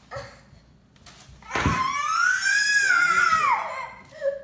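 A toddler lets out one long, high-pitched scream lasting about two seconds, rising and then falling in pitch, a protest at being kept in a timeout chair. A dull thump comes just as it starts.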